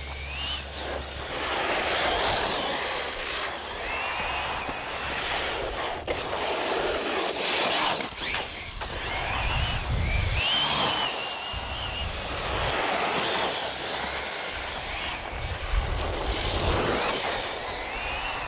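Brushless electric motor of an Arrma Fireteam 1/7 RC truck, a Hobbywing 4082 2000 kV, whining as the truck runs at high speed on a tall 25-tooth pinion. The whine rises several times as it accelerates, about a second in, around four seconds and around ten seconds. It sits over a constant loud rushing noise with low rumble.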